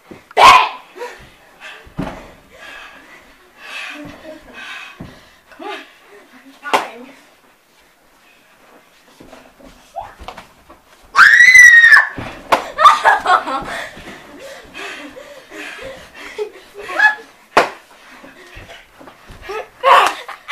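Children wrestling: scattered slaps and thumps of hands and bodies, with voices and laughter. About eleven seconds in, one child lets out a loud, high-pitched squeal that rises and falls.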